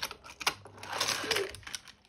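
Die-cast Hot Wheels car running along plastic toy track: a couple of sharp clicks near the start, then about a second of fast, dense rattling as its small wheels roll over the track.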